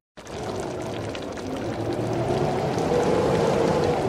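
Steady watery bubbling from a pot of food cooking, growing slightly louder as it goes.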